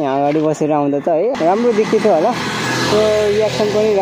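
A voice talking, with motorcycle engine and road noise under it from a cut about a second in.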